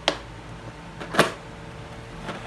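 Lid of a plastic ice cream tub being pried open by hand: two sharp plastic clicks, the louder one about a second in.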